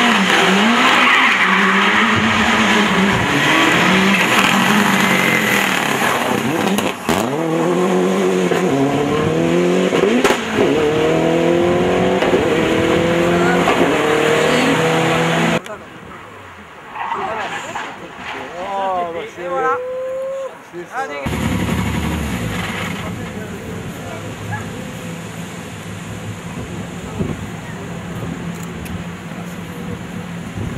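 Rally car engines at full throttle, the pitch climbing and dropping again and again as the cars accelerate through the gears. About halfway in the sound cuts to a quieter passage with a few brief high sweeps, and after another cut a steadier, quieter engine drone.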